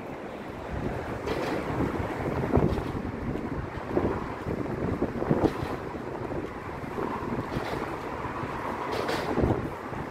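Wind buffeting the microphone: an uneven, gusting rush of noise.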